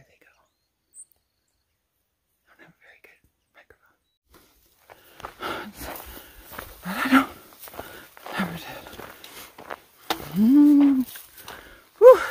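Near silence for about four seconds, then footsteps and rustling through dry grass on a trail. Short breathy vocal sounds come through it, and a long hummed tone near the end is the loudest thing.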